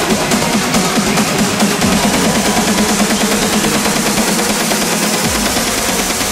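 Uplifting trance track playing: a fast, repeating synth pattern over a steady electronic backing, with the low end swelling near the end.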